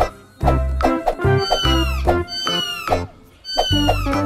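Background music with a steady beat, with a kitten mewing over it: a few high mews, each falling in pitch, in the second half.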